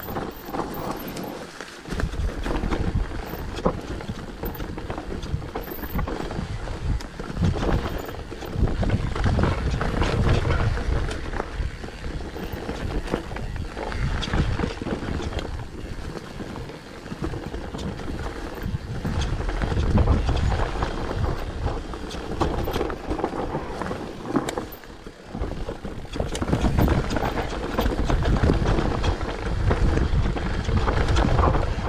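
Mountain bike riding downhill on a dirt forest trail: wind rumbling on the camera microphone, tyres rolling over dirt and roots, and frequent clicks and knocks from the bike over bumps. The rumble swells and eases with speed, loudest around a third, two thirds and near the end.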